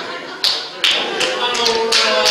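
A few sharp hand claps, sparse at first and coming closer together toward the end, with voices under them.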